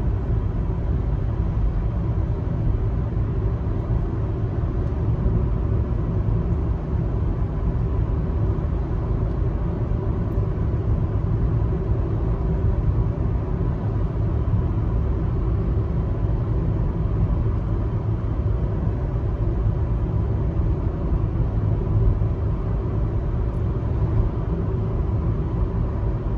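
Steady low rumble of a car driving along a paved road, heard from inside the cabin: tyre and engine noise with no sudden changes.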